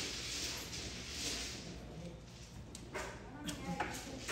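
Mahjong tiles clacking against each other and the table as players draw them from the wall, a few sharp clicks in the last second or so.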